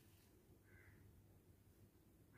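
Near silence: quiet room tone, with one faint, short bird call a little under a second in.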